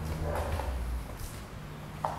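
Faint handling noise from a hand-held camera being moved along a bicycle, with a low rumble that fades out in the first half-second and two soft brief rustles.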